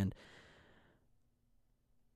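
A man's breathy sigh close to the microphone, fading out over about a second, then near silence.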